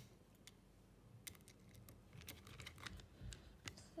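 Faint, irregular clicks and small scrapes of a precision screwdriver turning a screw into the metal base of a hard disk drive, fastening its spindle motor, with the ticks coming thicker in the second half.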